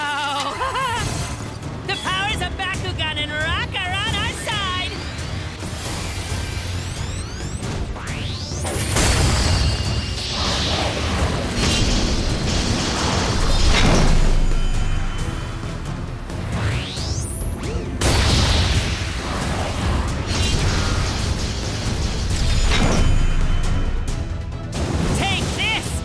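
Cartoon battle soundtrack: music under action sound effects, with booms and two rising whooshes, one about eight seconds in and another about seventeen. Wavering voices or vocal-like effects come in the first few seconds.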